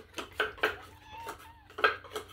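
Several light clicks and taps, with a faint, short, high cat meow about the middle.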